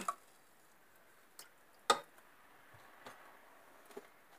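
Mostly quiet, with a few light clicks and one sharper clink about two seconds in, from a glass jar of lye solution being handled and let go in a metal pot of cold water.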